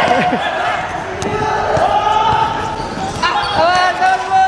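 A ball bouncing and thudding on an indoor sports-court floor, with players' voices calling and shouting over it.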